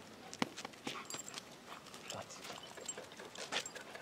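Several dogs standing close by, panting quietly, with a few short faint clicks.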